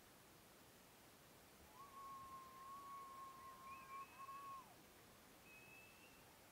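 Near silence: faint steady hiss. About two seconds in, a faint thin whistle-like tone holds one pitch for nearly three seconds, breaks briefly, then drops away, with a brief higher tone near the end.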